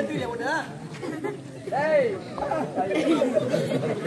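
Several voices talking over one another, with a man's voice rising and calling out loudly about two seconds in.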